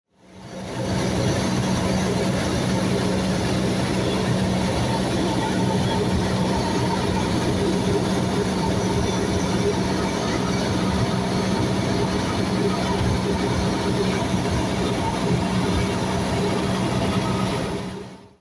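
A Cessna 172S's four-cylinder Lycoming IO-360 engine and propeller running steadily in flight, heard inside the cabin as a constant hum with an even rush of noise. It fades in at the start and fades out near the end.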